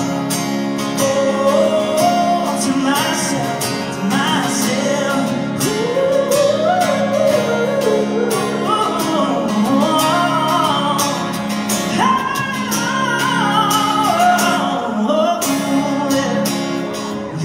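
Live country pop song: a male voice singing a slow melody over strummed acoustic guitar, heard from among the audience in a large, echoing hall.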